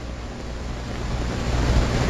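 A pause in speech filled by a steady low hum and faint hiss of background noise, growing slightly louder toward the end.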